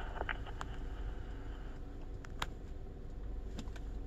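Police handheld radio's open-channel hiss at the end of a dispatcher's transmission, cutting off suddenly about two seconds in as the transmission drops, with no reply to the call. After that only a low steady rumble and a few faint clicks remain.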